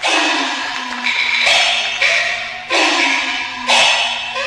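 Peking opera percussion ensemble playing a string of about six crashes of gongs and cymbals, each gong stroke ringing on with a sliding pitch, the bright cymbal clash spreading over the top.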